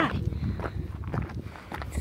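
Footsteps of a hiker walking on a sandy desert dirt trail, several steps in a row.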